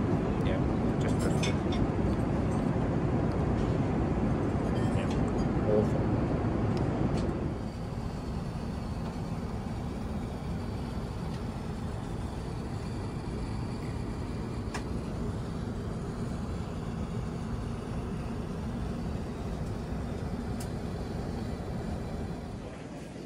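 Steady airliner cabin noise, the low rush of engines and airflow heard from inside the cabin. It drops clearly in level about seven seconds in and then carries on steadily, with a few light clicks near the start.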